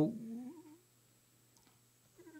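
A man's voice trailing off into a short, faint wavering hum in the first half-second, then near silence with only faint room tone.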